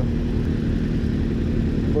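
Motorcycle engines idling, a steady low running sound with a constant hum.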